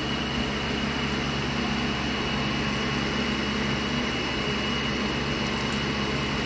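Hot oil sizzling steadily around a round of dough frying in a pan, over a constant low hum.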